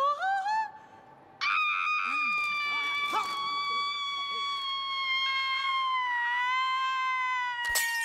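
A woman singing operatically: a short rising phrase, then one long high soprano note held for about six seconds that wavers and sinks a little in pitch. Near the end a sharp crack of a wine glass breaking.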